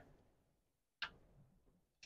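Near silence, with a single short click about a second in.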